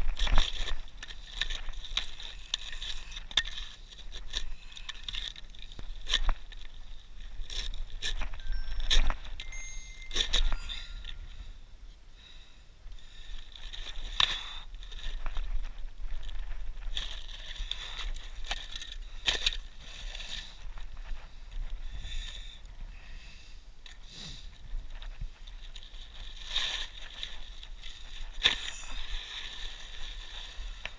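Utility knife cutting asphalt shingles along a roof valley: an irregular run of scrapes and crackles as the blade drags through the gritty shingle surface, quieter for a moment partway through.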